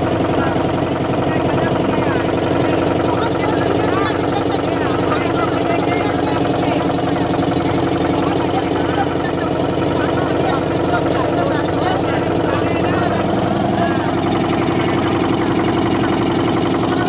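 A boat's engine running steadily, with people's voices chattering over it.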